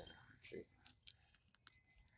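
Near silence with a handful of faint, sharp clicks about a second in, after one short spoken word.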